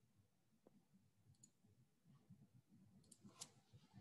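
Near silence, with a few faint clicks near the end.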